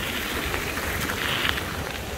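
Surf from small waves breaking and washing up a sandy beach, a steady rushing wash that swells slightly about a second and a half in, with wind rumbling on the microphone underneath.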